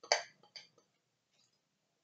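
A fork scraping and clicking against a ceramic bowl while stirring egg into flour: one short scrape at the start, then a couple of faint clicks about half a second in.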